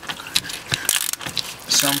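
Socket ratchet wrench clicking in a run of irregular clicks as its handle is swung back and forth, loosening an outdrive hinge pin.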